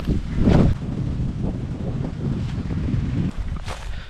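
Wind buffeting the microphone: a steady low rumble with a stronger gust about half a second in.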